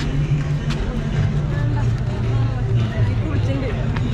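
Crowd of people talking over one another, with a steady low hum underneath.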